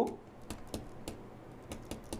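Pen stylus tapping on a writing tablet while numbers are handwritten: a handful of light, irregular clicks.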